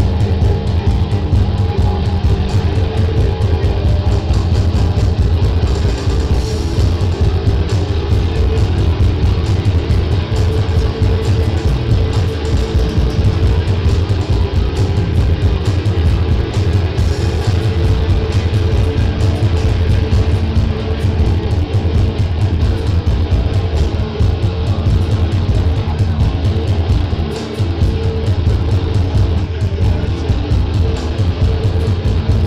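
A live instrumental stoner-doom rock band playing loud and continuously: electric guitars and drums over a heavy, sustained low end.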